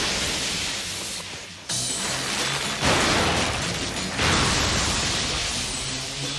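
Anime electric-shock sound effect: a sustained crackling discharge of a huge electrical blast. It dips briefly and surges back about two seconds in, then swells again near three and four seconds in.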